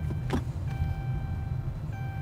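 Car engine and road rumble heard from inside the cabin while driving slowly. A short click comes early, and a steady electronic tone sounds for about a second partway through.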